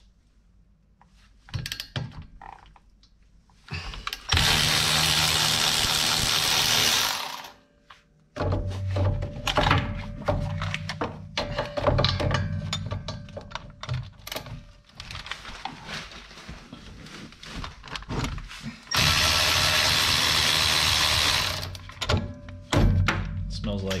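Cordless electric ratchet running for about three seconds at a time, twice, backing out the rear brake caliper's 14 mm bolts. Between the runs come scattered clicks and knocks of tools and metal parts.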